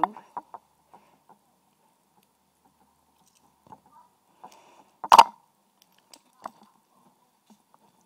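Lock picks and a Master Lock padlock being handled: a few faint scattered metal clicks and taps, with one sharp knock about five seconds in.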